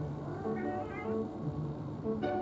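Background string music, with a short cat meow that rises in pitch about half a second to a second in.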